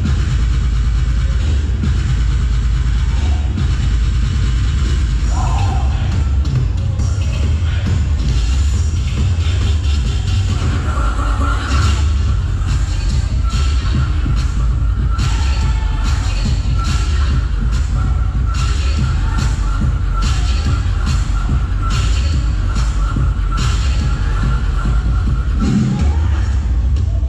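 Loud electronic dance music with heavy bass and a steady beat, played through PA loudspeakers for a crew's dance routine; a held high note comes in about halfway.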